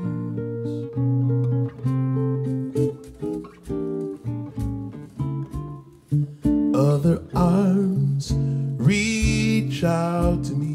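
Double-neck acoustic guitar played fingerstyle: a run of separate plucked melody notes over bass notes. A wordless voice with sliding pitch joins briefly about seven seconds in and again near the end.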